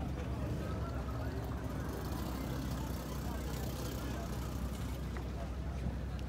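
Faint, distant voices of people talking over a steady low rumble.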